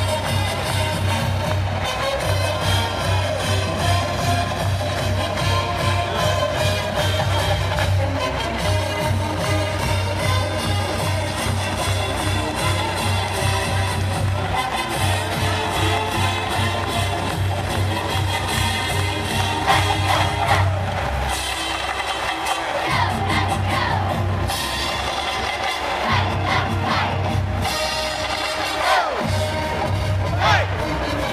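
Upbeat band music with a steady, heavy beat, played loud. The beat drops out briefly a few times in the second half, and the crowd whoops and cheers now and then.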